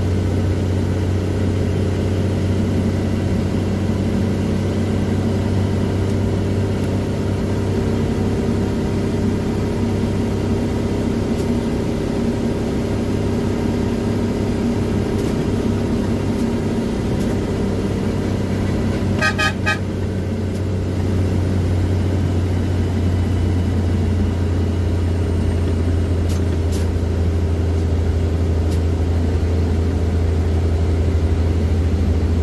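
Old Mercedes-Benz truck's diesel engine running steadily at cruising speed, heard from inside the cab. A brief pulsing horn toot sounds about two-thirds of the way through.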